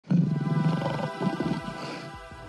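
Intro music with a lion roar sound effect that starts abruptly right at the beginning, loudest in the first second and then fading.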